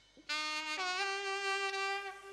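A solo saxophone comes in loudly about a third of a second in, playing one note, then stepping up to a higher note that it holds with a small scoop in pitch.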